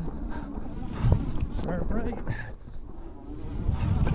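Electric hardtail mountain bike rolling down a rough dirt singletrack: a steady low rumble from the tyres and the ride over the ground, with the bike rattling and knocking over bumps, the sharpest knock about a second in.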